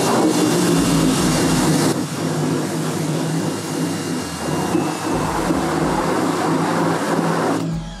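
Electric pressure washer running, its motor humming steadily under the hiss of the water jet spraying onto an exposed screen-printing screen to wet the emulsion before washout. The spray cuts off sharply just before the end.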